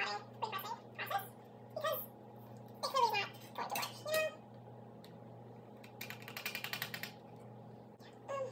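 Several short, high-pitched vocal sounds with rising and falling pitch, then after a pause a fast rattling scrape lasting about a second.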